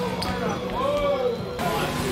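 A BMX bike's tyres thumping on concrete about a quarter second in, then a person's voice calling out, its pitch rising and falling, near the middle.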